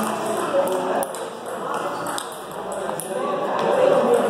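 Indistinct chatter of several people in a table tennis hall, with scattered short clicks of table tennis balls striking bats and tables.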